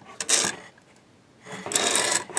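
Printed circuit board scraping across a workbench as it is turned by hand: a short scrape just after the start, a quiet moment, then a longer scrape from about three quarters of the way in.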